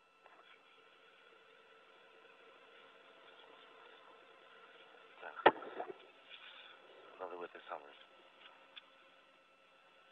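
Steady background hum and hiss aboard the International Space Station, carried over the station's audio feed. A sharp click comes about five and a half seconds in, and a few faint words follow shortly after.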